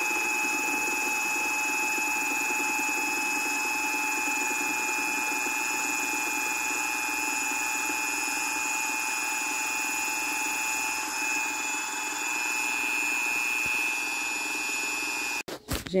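Corded electric drill with a paddle mixing rod running at one steady speed, a continuous high whine, as it stirs a bucket of homemade lye soap mixture until it thickens. It stops abruptly near the end.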